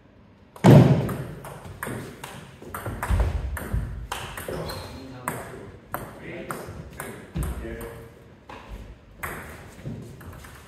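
Table tennis rally: the plastic ball clicking sharply off bats and table in quick succession, loudest near the start, then the ball bouncing on the wooden floor once the point ends.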